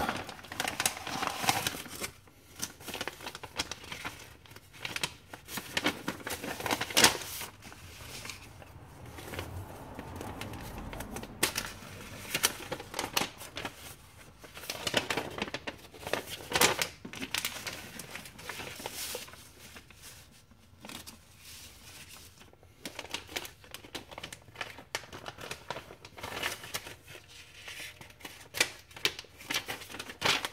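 A clear plastic bag and paper sheets crinkling and rustling as they are handled and unfolded, in irregular stop-start bursts.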